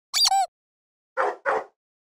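A dog's short high call that rises and falls, then two short barks in quick succession about a second later.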